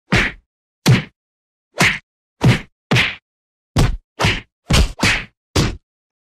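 A series of ten sharp whack sound effects, fight-style hits. Each is short, and they come irregularly about half a second to a second apart with dead silence between them.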